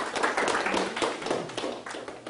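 Small audience applauding, the clapping thinning out toward the end.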